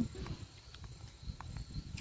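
Wind rumbling irregularly on a phone's microphone while walking, with a few faint footstep knocks on a paved road.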